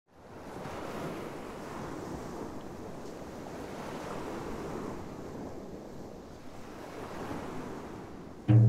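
Ocean waves washing in: a steady rushing of surf that fades in at the start and swells and eases gently.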